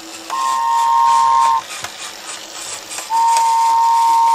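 Sound effect of a steam train whistle sounding twice, a short blast and then a longer one, over a steady hiss.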